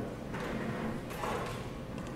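Faint handling noises from a long trash grabber (reach tool) being lifted and moved: a few soft knocks and rubs, spaced out.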